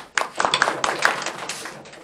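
A small audience clapping briefly: a quick, dense run of sharp hand claps that starts just after the start and dies away near the end.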